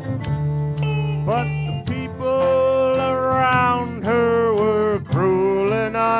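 Live country-rock band playing an instrumental break between verses: a lead line of sliding, bending notes over guitar and a steady drumbeat.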